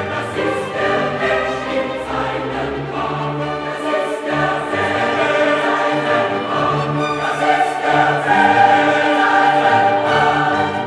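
Mixed choir singing with orchestral accompaniment, classical choral music; it grows a little louder near the end.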